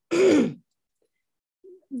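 A person clearing their throat once, a short rasping burst about half a second long.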